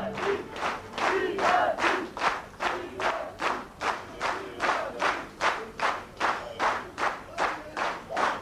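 A crowd of men clapping in unison in a steady rhythm, about two and a half claps a second, with crowd voices behind the claps.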